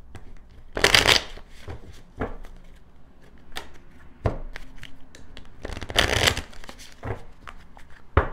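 A deck of tarot cards being shuffled by hand: two bursts of rapid card shuffling, about a second in and again around six seconds, with a few short knocks in between.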